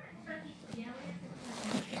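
Soft rustling and scratching of clothing and hair as a child moves her hands close to the phone, with a faint murmur of her voice early on.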